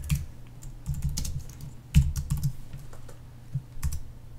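Computer keyboard typing: a handful of separate keystrokes spread unevenly over a few seconds, one sharper than the rest about halfway, as a short terminal command is typed and entered with the return key near the end.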